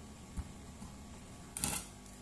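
Quiet handling of avocado flesh going into a stainless steel cup: a soft knock about half a second in, then a short, louder scraping rustle near the end.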